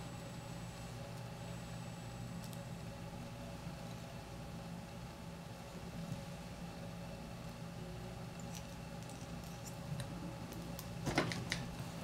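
Quiet room tone with a steady low hum. A few faint clicks and ticks come near the end as thread and tools are handled at a fly-tying vise.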